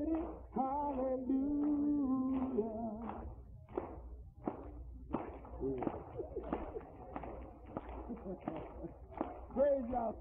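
A man singing slow, held notes that end about three seconds in, followed by indistinct voices and short, sharp strokes.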